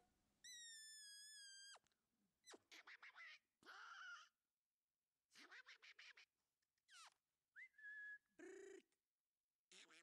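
A person whistling short, high, steady notes and making quick clicking and smacking noises between them, calling a puppy's attention.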